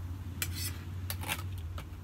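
A metal spoon clinking against dishes: several short, sharp clinks, spread across the two seconds, as orange pulp is scooped and handled.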